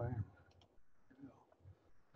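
A brief wordless vocal sound at the very start, then a few faint clicks of a computer mouse over low room tone.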